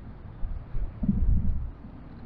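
Low, uneven rumble of wind buffeting the microphone outdoors, with a swell about a second in, over faint street traffic.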